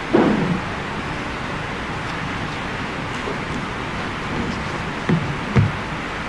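Steady hiss of room noise in a debating chamber. Just after the start there is a brief falling creak, and about five seconds in there are two short low knocks, the small sounds of people moving in the room.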